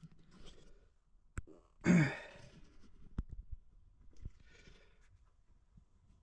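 Quiet handling sounds with a few sharp clicks, and about two seconds in a man's short voiced exhale that falls in pitch, like a sigh. A softer breath follows near the end.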